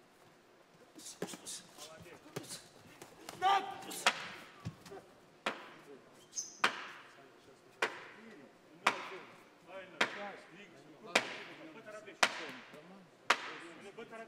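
A knockdown count being kept: sharp bangs on the boxing ring apron, about one a second, nine in a row from about four seconds in.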